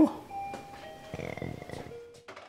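A few soft chime-like tones sounding one after another, each a single steady note.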